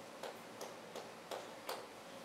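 A run of sharp, evenly spaced ticks, about three a second, over a steady low room hum.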